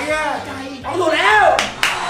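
Men shouting "hey!" and clapping their hands, with two sharp claps about a second and a half in.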